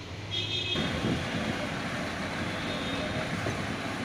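Belt conveyor carrying fly ash, running with a steady mechanical rumble and low hum. There is a brief high-pitched squeal about half a second in.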